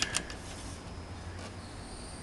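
Schumacher 6/2 amp battery charger humming steadily while supplying just under four amps to an electrolysis cell, with a couple of light clicks at the start as a hand handles the charger's case.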